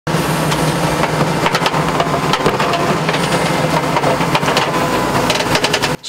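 Excavator's diesel engine running steadily while its steel toothed bucket digs into a rocky trench, with repeated knocks and scrapes of metal on stones and soil.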